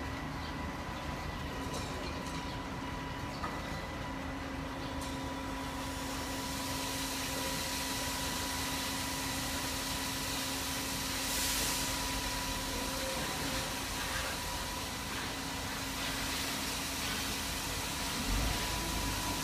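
Air-conditioner outdoor unit running with a steady hum and a few faint whining tones. Over it comes faint tearing and rustling as a jackfruit is pulled apart by hand along its seams.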